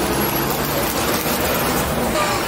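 A motor vehicle engine running steadily with a low hum, over street traffic noise.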